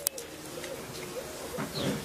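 A few faint, soft, low animal calls over a quiet steady background, the clearest near the end.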